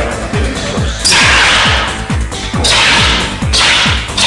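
Two long hissing blasts from a fire extinguisher spraying onto burning clothing, the first about a second in and the second near the end. Both play over electronic dance music with a fast, steady kick-drum beat.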